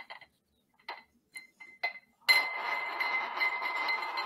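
A few light clinks of a neodymium sphere magnet being set into a glass. About two seconds in, a steady buzzing rattle starts abruptly as the magnet, driven by the coil beneath, spins against the glass.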